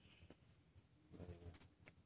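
Near silence: faint background, with a brief faint low sound about a second in and a light click or two near the end.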